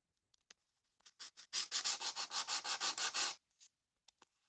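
Nail file rubbing fast back and forth over acrylic filler on a plastic Barbie doll's neck, sanding it smooth. A few light taps come first, then about a second and a half in, a quick run of rasping strokes, about seven a second, which stops shortly before the end.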